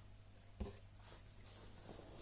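Near silence: quiet small-room tone in a pause between speech, with one faint click a little over half a second in and faint handling sounds from fingers working a small object.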